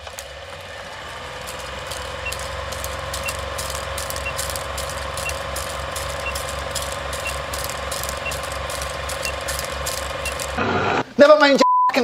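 Vintage film projector sound effect under a countdown leader: a steady hum with rapid mechanical clattering and a light tick about once a second. Near the end it gives way to a short single-tone beep.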